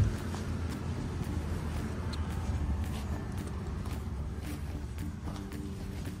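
Footsteps walking across lawn grass over a steady low rumble, with a sharp knock right at the start.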